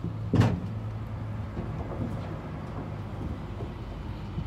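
A single sharp knock on the livestock trailer about half a second in, over the steady low hum of the idling cattle truck's engine.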